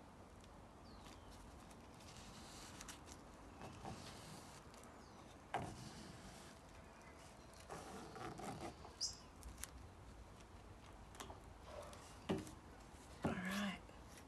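Faint handling noises from gloved hands working wet paint-covered canvases on a wire rack: scattered soft rubs and light clicks, with a sharper knock about five and a half seconds in and a short flurry of taps around eight seconds.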